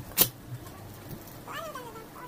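Paper and plastic packaging crinkling as a cardboard parcel is unpacked, with one sharp crackle just after the start. About one and a half seconds in comes a short, pitched call that falls in pitch.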